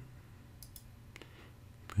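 A few faint, separate computer mouse clicks over quiet room tone.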